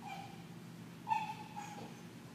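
A dog whining: two short high-pitched whimpers, the second one louder, about a second in.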